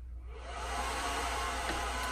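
Cooling fans of a Supermicro SYS-2029BT-HNR 2U four-node server spinning up at power-on. The rushing air noise swells in under a second and then holds steady at full speed, which is the server's default at power-up before it has booted.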